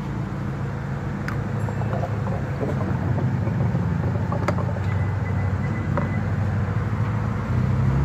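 A steady low mechanical hum, like an engine or machine running, with a few faint light clicks.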